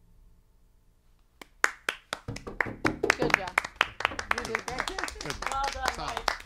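A few musicians clapping their hands after a song ends, starting from near silence about a second and a half in and growing denser, with voices talking over the claps.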